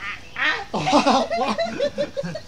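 People laughing and squealing in quick, overlapping bursts, starting about half a second in.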